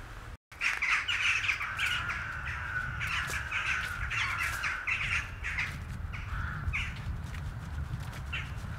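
Crows cawing, many short calls in quick succession that start suddenly about half a second in, over a low steady rumble.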